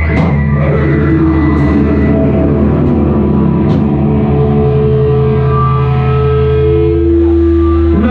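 Live rock band playing loud, with guitars and bass holding long sustained chords and a few cymbal crashes; the held notes change near the end.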